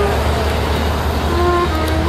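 Road traffic: a low, steady engine rumble from passing vehicles, with street noise. A steady hum-like tone joins in about halfway through.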